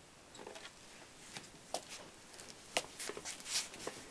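Faint scattered clicks and taps of a clear plastic clamshell container being handled and set down on a table, the loudest in a cluster near the end.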